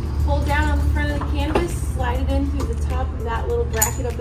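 A few sharp metallic clicks and taps from the bimini top's metal frame arms being slid and seated in their pins, the clearest about a second and a half in and near the end. Underneath runs a steady low hum with a voice in the background.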